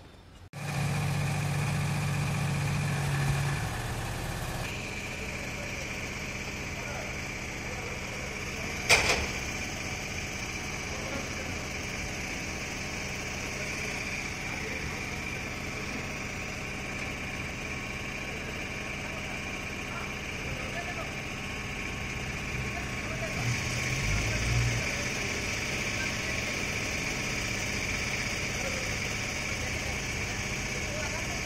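A steady machine drone with a constant high whine running under it, and a single sharp knock about nine seconds in.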